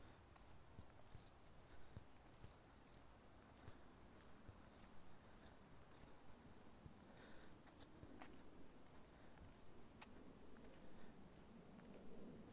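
Faint, steady high-pitched trilling of insects, a rapid even pulse, with a few soft ticks.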